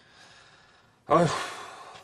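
A man's heavy voiced sigh, the Korean interjection 'ahyu', about a second in. It is loud and breathy at the start, then falls in pitch and trails off. Before it there is a near-quiet moment of room tone.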